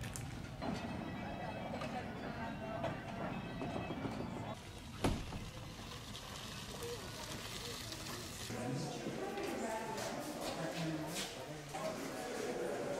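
Indistinct voices of people talking, with faint music underneath. A single sharp click about five seconds in.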